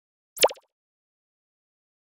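A single short pop sound effect about half a second in, falling quickly in pitch, such as an animated graphic makes as it pops onto the screen.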